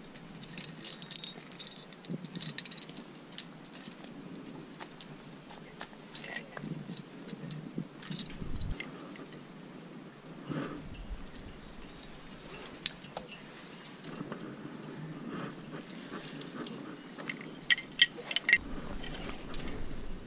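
Climbing hardware on a trad rack (carabiners and cams) clinking and jingling lightly as a climber clips and places protection in a granite crack and moves up. Scattered sharp clicks with short metallic rings come in a cluster in the first few seconds and again near the end.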